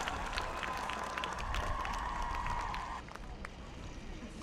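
Small crowd applauding, the claps thinning out about three seconds in, with a steady high tone under them that stops at the same moment.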